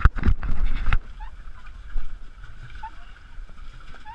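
A loud rumbling burst lasting about a second at the start, with a smaller one near two seconds, over the steady low noise of water and wind on a pedal catamaran moving across choppy sea; a few faint short squeaks.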